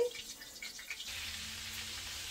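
Floured ground-beef meatballs frying in vegetable oil in a pan over medium heat: a steady sizzle that sets in about a second in, after a few faint knocks.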